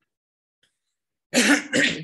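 A man coughs twice in quick succession, starting about a second and a half in after a silent pause.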